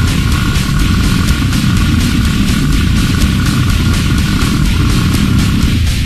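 Extreme metal: heavily distorted, low-tuned guitars and bass over fast, evenly spaced drum hits, with a high held note ringing above that stops near the end as the riff changes.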